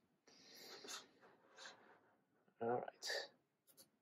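Soft sliding rustle of a computer mouse being moved across the desk, in two short swells.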